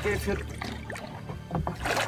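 Wooden paddle working the water as a shikara is rowed: soft water and paddle sounds over a steady low hum, with a louder swish near the end, after a man's speech trails off.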